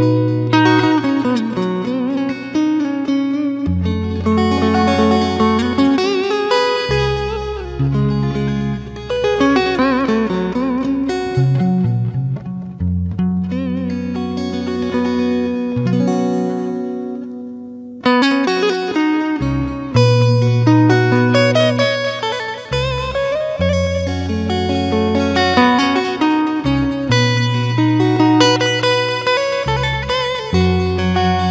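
Instrumental guitar music: a lead guitar with a scalloped fretboard plays a slow melody full of bent, wavering notes over a backing with sustained bass notes.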